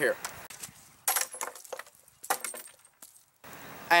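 Glass bottles struck with the synthetic plastic stock of a Crosman 760 air rifle: two crashes of breaking glass with clinking after them, one about a second in and one past two seconds.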